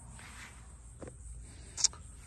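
Quiet background with a soft click about a second in and a short, sharper tick near the end, small handling noises.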